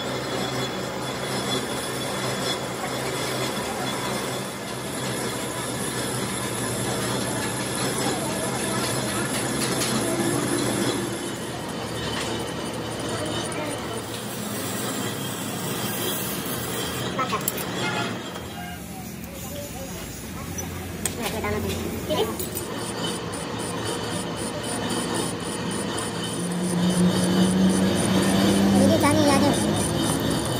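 Metal lathe running with a truck rear axle shaft spinning in it, the tool bit cutting the steel shaft and, for a stretch mid-way, a hand file held against the turning shaft. A louder steady low tone comes in near the end.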